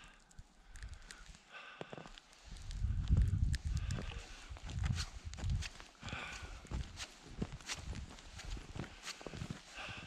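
A person breathing hard while trudging on foot through deep powder snow, with the soft crunch of boot steps. Low rumbling on the microphone comes through the middle stretch.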